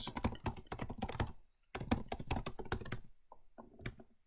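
Typing on a computer keyboard: two quick runs of keystrokes with a short pause between them, then a few scattered key presses near the end.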